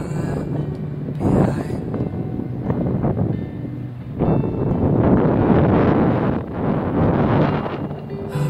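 Wind buffeting the microphone in uneven gusts, stronger in the second half.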